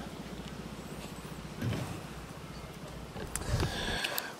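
A small engine running steadily in the distance, a low, evenly pulsing rumble, with a light hiss over it.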